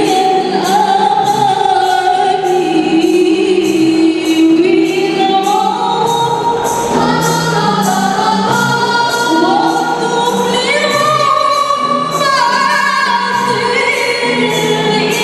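Female voices singing an Islamic qasidah together, accompanied by rebana frame drums struck in a steady beat.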